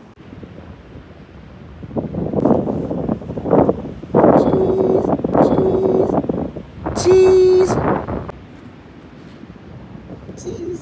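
Wind buffeting the microphone in gusts for most of the stretch. Over it come a few short, held, high tones about halfway through.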